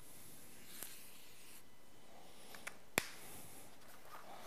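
Felt-tip marker squeaking and rubbing faintly on flip-chart paper as circles are drawn, then a few small clicks and one sharp click about three seconds in.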